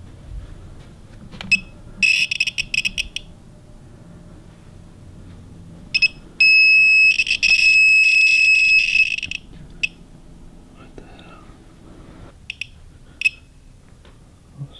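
Handheld RF bug detector sounding off through its speaker. A crackling, buzzing chatter starts about two seconds in. Midway a steady high beep turns into a loud crackling buzz for about two seconds as its signal lights climb to red, showing a strong radio signal, and short chirps follow near the end.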